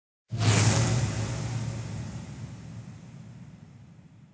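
Logo-animation sound effect: a sudden whoosh with a low rumble underneath, starting about a third of a second in and then fading away slowly.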